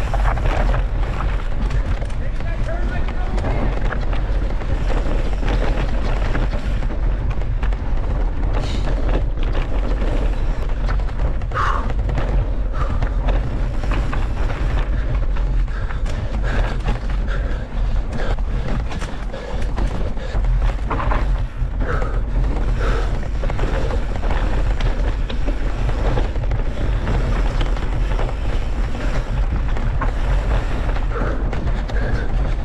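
A mountain bike descending a trail at speed: wind rumbling on the microphone over steady tyre noise and the knocks and rattles of the bike on rough ground.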